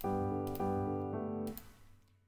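Toontrack EZKeys' sampled upright piano playing three chords in quick succession, the last fading out about a second and a half in, as chords are auditioned from the plugin's chord wheel.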